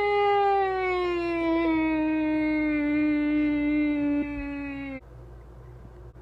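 A child's voice holding one long howl-like call for a toy dinosaur, falling slowly in pitch and cutting off about five seconds in.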